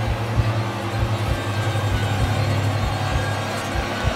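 Dark cinematic underscore: a steady low drone with deep pulses about three times a second.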